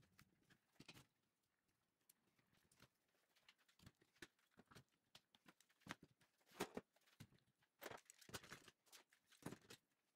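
Faint, irregular clicks and knocks of one-handed bar clamps being squeezed tight and set against glued-up wooden panels, busiest and loudest in the second half.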